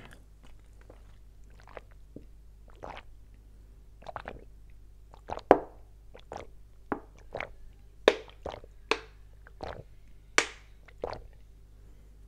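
A man drinking water from a plastic bottle held upside-up to his mouth: a series of short gulps and swallows, sparse at first and coming about twice a second in the second half.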